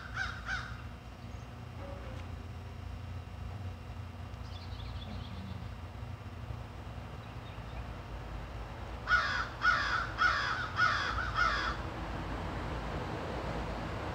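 A bird calling: one short call at the very start, then a quick run of five calls about two-thirds of the way in.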